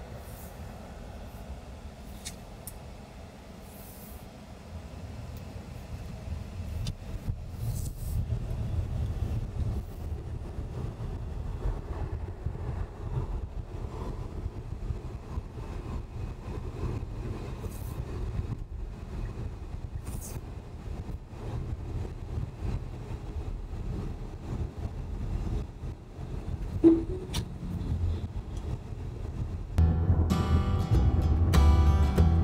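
Tyre and road noise inside a Tesla Model Y's cabin: a steady low rumble that grows louder after about six seconds as the car picks up speed. One short sharp sound near the end.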